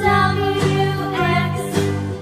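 Children's phonics song: bright music with steady bass notes under a sung melody.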